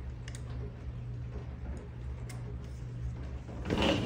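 A few faint clicks of plastic mount parts being handled and fitted together, over a steady low hum; a short hissing rush near the end.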